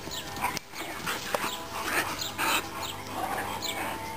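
A Dogue de Bordeaux and a boxer play-fighting, giving several short vocal bursts, the strongest about halfway through.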